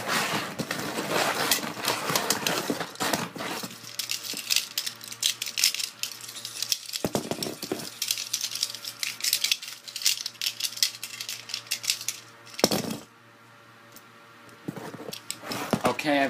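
Quick clicks and rattles of small hard objects being shuffled around by hand, over a faint steady hum, dropping quieter for a moment near the end.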